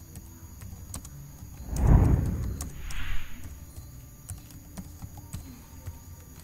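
Typing on a computer keyboard, faint key clicks. A louder rush of noise comes about two seconds in, followed a second later by a shorter hiss.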